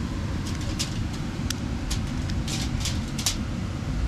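Aluminium foil crinkling in a string of short, sharp crackles as hands pick apart roasted crayfish wrapped in it, over a steady low rumble.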